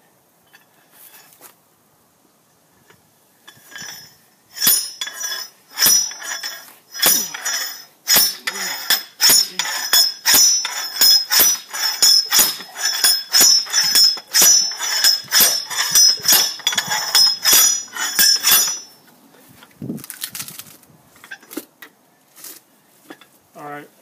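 Hand-operated log splitter driven into a wet, freshly cut maple round: about twenty sharp metal-on-metal clanks, at roughly one and a half a second, as the wedge is worked down into the hardwood. The strikes start a few seconds in and stop a few seconds before the end, after which only a few quieter knocks and handling noises remain.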